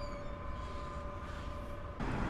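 Steady low rumble of city street traffic, with a faint steady tone running through it.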